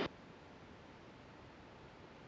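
Near silence: a faint steady hiss from the cockpit audio feed, just after a short burst of noise cuts off at the very start.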